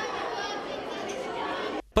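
Many children chattering at once in a school canteen, a steady jumble of overlapping voices that cuts off abruptly near the end.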